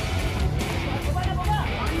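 Music with a heavy bass beat, with voices over it.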